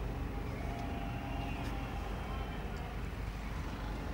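Steady low background rumble, with faint distant voices.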